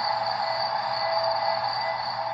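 Soft background music with long held notes, from the ad's soundtrack.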